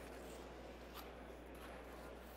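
Faint room noise with a low steady hum and a single faint click about a second in.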